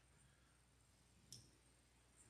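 Near silence: faint room tone, with one short faint click about a second and a third in.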